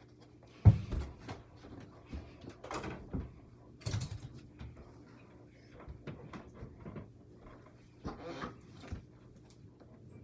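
Thumps and knocks of a small rubber ball being shot at an over-the-door mini basketball hoop, hitting the backboard and door and bouncing on the floor. The loudest thump comes about a second in, with more knocks around three and four seconds and again near the end.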